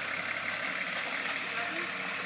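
Four-wheel-drive vehicle's engine running steadily as it creeps slowly along a muddy track.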